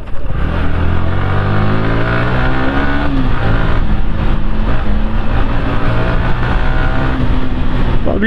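Sport motorcycle's engine accelerating: its pitch climbs for about three seconds, drops sharply at a gear change, then climbs again and levels off near the end.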